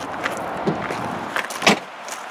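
A few knocks and clicks from handling around a car's boot, the loudest near the end, over a steady background hiss.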